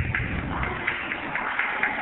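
Audience applauding, a patter of many hand claps.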